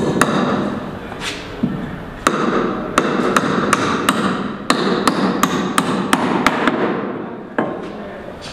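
Hammer blows on a timber brace of a plywood column formwork box: a few spaced strikes, then an even run of about three strikes a second, with one last blow near the end.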